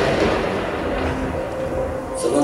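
A steady, noisy rumble with a deep low end, a recorded sound effect played over a hall's sound system.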